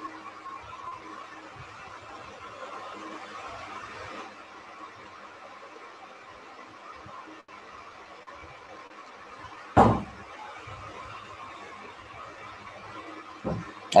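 Low steady hiss of an open microphone with faint room noise. About ten seconds in comes a single short, loud thump close to the microphone.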